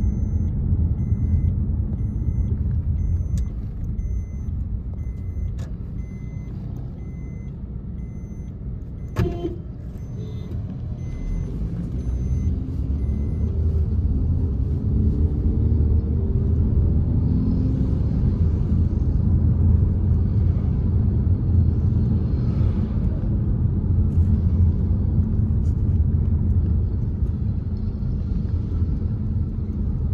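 Car driving, heard from inside the cabin: a steady low engine and road rumble. It eases for a few seconds, with a single sharp knock about nine seconds in, then builds again with a rising engine note as the car gets going.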